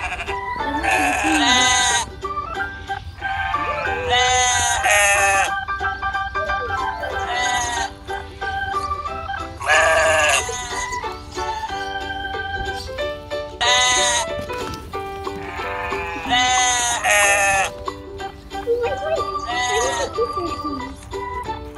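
Background music, with sheep bleating repeatedly over it in short wavering calls, some in pairs.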